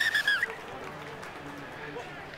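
Referee's whistle blown in one short trilling blast, about half a second long and dipping in pitch as it ends, stopping play. Low stadium crowd murmur follows.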